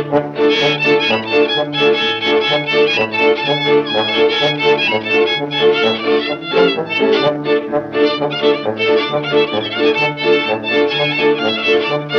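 Historic 1928–1933 Ukrainian village dance band recording: a fiddle carries the tune over a bass line that alternates two notes about twice a second, with a steady beat.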